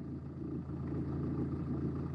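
Steady low background rumble with a constant hum, like a running motor.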